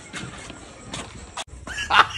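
A dog barking, loudest near the end.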